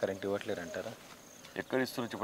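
A man's speech in snatches, with a quiet pause in the middle. Underneath runs a faint, steady high-pitched insect chirring.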